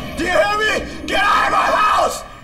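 A person yelling out in two long, high-pitched cries; the second one breaks off suddenly.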